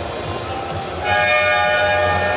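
Basketball arena game horn sounding one loud, steady blast, starting abruptly about a second in, over the murmur of the hall.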